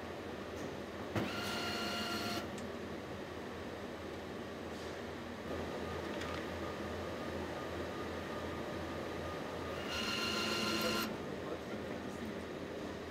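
Two short whirs of a cordless nutrunner's electric motor, each about a second long, one about a second in and one near the end, over a steady factory hum.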